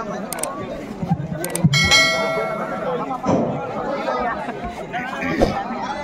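Subscribe-button sound effect: two sharp mouse clicks, then a bell ding at about two seconds in that rings for about a second. It plays over the chatter of a crowd.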